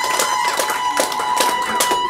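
Public-address microphone feedback: one steady, held tone over scattered hand clapping.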